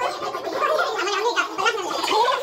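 Several voices talking over each other, indistinct.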